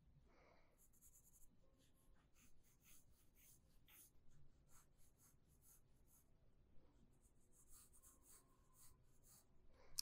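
Very faint pencil strokes on drawing paper: short scratchy sweeps that come and go in irregular clusters as lines of a sketch are drawn.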